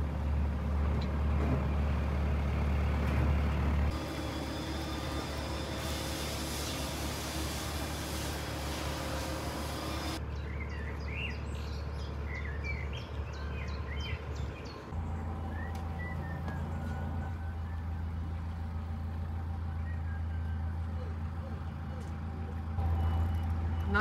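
Narrowboat's diesel engine running steadily at low revs, a constant low hum that shifts abruptly in tone a few times.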